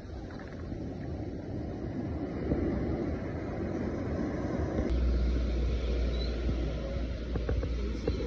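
Surf washing in over sand at the water's edge, with wind on the microphone. About five seconds in the sound changes abruptly and a heavier, steady low wind rumble takes over.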